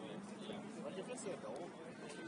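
Several voices talking and calling out at once, indistinct and overlapping, with no single voice clear.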